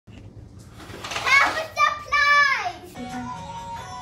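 A young girl's high-pitched voice calling out twice, the second call long and falling in pitch at the end. Music with steady held notes starts about three seconds in.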